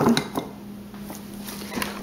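Faint handling sounds of salad being packed: a few light clicks and soft rustles of lettuce and packaging at a glass mason jar, mostly in the first half-second, then quiet room tone.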